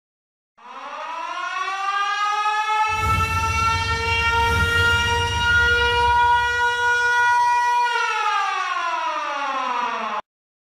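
A siren winds up in pitch, holds a steady wail, then starts to wind down near the end. A low rumble sounds beneath it through the middle stretch.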